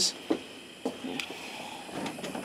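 A few faint, short knocks and clicks over a low steady hiss, typical of a handheld camera being moved about.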